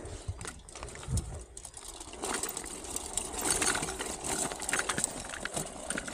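Small bicycle rolling over stone paving: irregular clicking and rattling that grows busier from about two seconds in, with one low thump about a second in.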